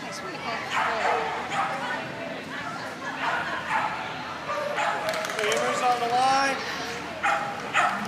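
A Sheltie barking and yipping repeatedly, in short high calls, while it runs an agility course, with voices behind.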